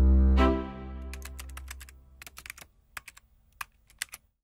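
Outro logo sting. A deep synth swell rises, with a bright hit about half a second in that dies away over a couple of seconds. Then comes an uneven run of sharp clicks like computer-keyboard typing.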